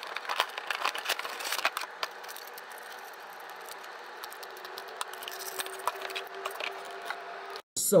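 Toy car box being opened by hand: the clear plastic window and cardboard insert crinkle, with many small clicks and rustles. The handling is busiest in the first two seconds, then settles to a fainter steady rustle that cuts off just before the end.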